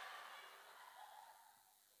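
Near silence: faint room noise that fades away over the first second and a half.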